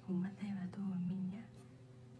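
A woman's soft speaking voice for about the first second and a half, then quiet room tone.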